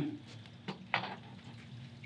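Two soft clicks close together about a second in, from a small reflector telescope tube being handled and set onto an equatorial mount, over quiet room tone.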